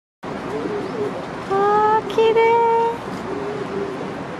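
Domestic pigeons cooing softly, with two loud, steady, flat tones about halfway through, one after the other, the second a little higher and longer.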